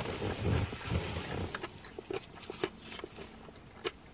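A person chewing a big mouthful of a lamb bowl close to the microphone. The chewing is loudest over the first second and a half, then goes on more softly with scattered small wet clicks.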